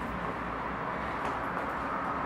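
Steady low background rumble and hiss, with no distinct sound standing out.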